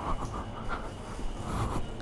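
A person breathing heavily inside a motorcycle helmet, in soft breaths close to the microphone.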